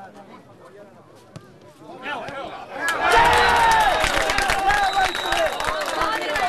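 A few scattered voices, then about three seconds in, loud shouting and cheering from several people at once as a goal is scored in an amateur football match, carrying on to the end.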